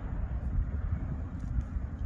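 Wind buffeting an outdoor microphone: an uneven low rumble with no distinct event.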